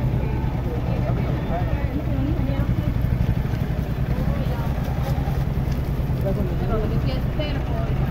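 Motorcycle engine idling, a steady low hum, with people talking in the background.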